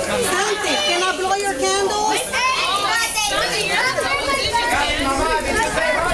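Overlapping chatter and calling of children and adults, many voices at once with no single clear speaker.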